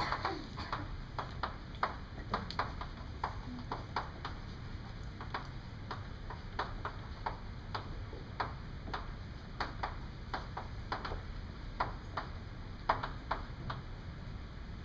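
Chalk tapping and scraping on a blackboard as words are written: a run of sharp, irregular clicks, several a second, over a steady low hum.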